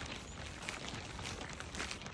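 Faint footsteps on a stony dirt road, a few soft crunches over a low, even background hiss.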